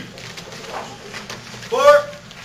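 Mostly speech: a loud shouted count near the end, over faint voices and low room sound in a large hall.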